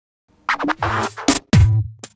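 Short electronic intro jingle with record-scratch effects and choppy hits whose pitch falls, over a low bass note, starting about half a second in after silence.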